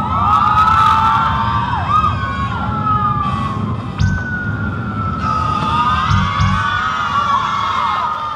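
Audience screaming and cheering: many high-pitched shrieks rising and falling over one another, starting suddenly.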